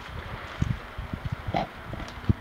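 Wind buffeting the microphone, heard as irregular low rumbles and thumps, with a short higher-pitched sound about one and a half seconds in.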